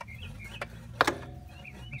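Motorcycle rear exhaust section being rocked loose from its collector joint: a single sharp metallic click about a second in, with a brief ring after it, over a low steady hum.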